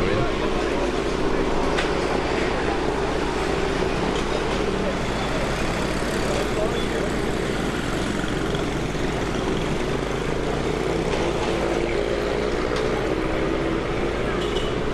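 Steady street traffic: cars and motor scooters running along the road, with indistinct voices mixed in.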